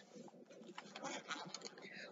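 Faint handling sounds of a fabric bag being opened: soft rustles and a few small clicks as its zip is undone.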